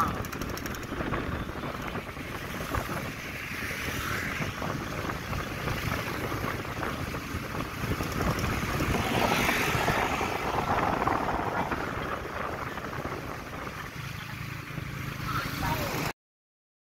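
Steady road and wind noise from riding in an open-sided tuk-tuk moving through traffic, with the vehicle's small engine running underneath.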